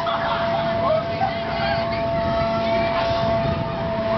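Swinging-arm amusement ride running, with a steady mechanical whine holding level under a low rumble, and riders' voices and shouts over it.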